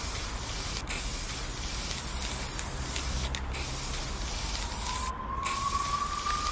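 Aerosol spray paint can hissing steadily, broken by short pauses, the longest about five seconds in. A faint whine, slowly rising in pitch, comes in during the last part.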